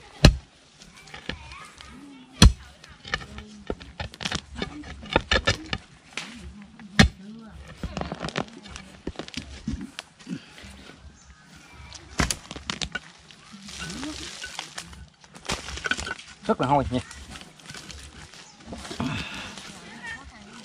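A long-handled digging tool striking into stony soil: four hard, separate blows a few seconds apart, with a quick run of lighter knocks between them.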